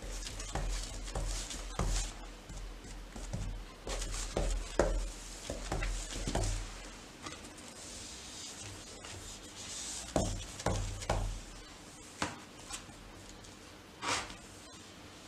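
Someone moving close by and painting with a brush: soft knocks, scuffs and rustles, with light brush strokes on the bottom edge of a door. The sounds come in irregular clusters, with a quieter stretch in the middle.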